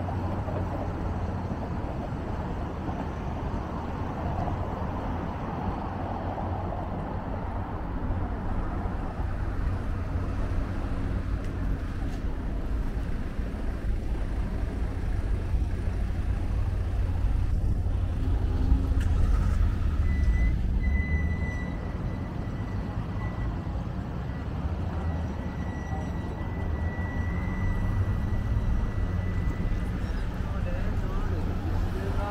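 Street traffic: a steady low rumble of passing cars and engines, swelling a little past the middle. A thin, steady high whine joins about two-thirds of the way through.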